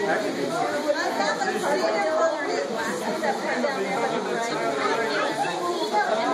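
Crowd chatter: many voices talking at once in a large hall, a steady babble with no single clear speaker.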